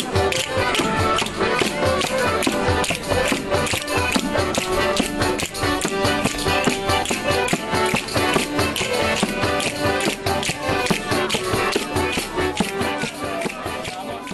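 Live folk music: a frame drum (tambourine) beats a steady rhythm under a melody instrument holding sustained notes.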